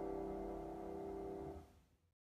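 The final chord of a solo piano-keyboard song ringing out, its held notes sustaining and then dying away to silence about a second and a half in.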